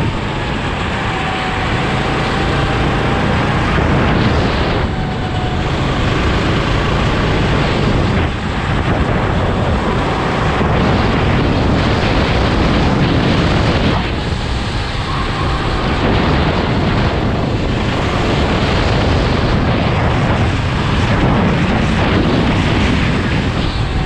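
Sodi RT8 rental go-kart's engine running at speed, heard from the seat with heavy wind buffeting on the camera microphone. The sound is steady and loud, dipping briefly a few times.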